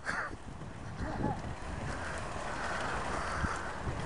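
Outdoor rumble and wind on a moving handheld camera's microphone while walking over wet tarmac, with a hiss that swells in the second half and a short faint voice about a second in.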